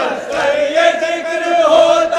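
Male voices chanting an Urdu devotional verse together, holding long drawn-out notes.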